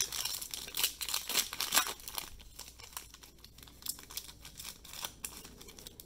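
A foil trading-card pack wrapper (2019-20 Donruss Optic Basketball retail) being torn open and crinkled by hand. The crackling is loudest in the first two seconds, then goes on as quieter crinkling.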